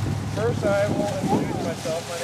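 A man's voice speaking over steady wind rumble on the microphone.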